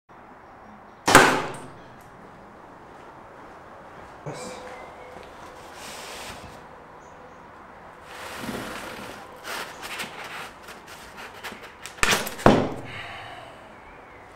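An arrow striking a foam block archery target with one sharp, loud hit about a second in. This is followed by scuffing and small clicks of the arrow being handled at the target, and two more loud knocks near the end.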